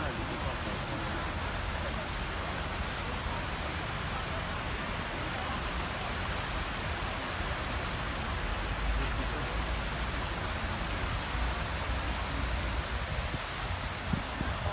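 Steady rushing and splashing of a large ornamental fountain's water jets falling back into the stone basin.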